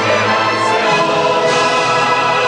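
Symphony orchestra and mixed choir performing together in a full-ensemble passage, sustained chords held at a steady, loud level.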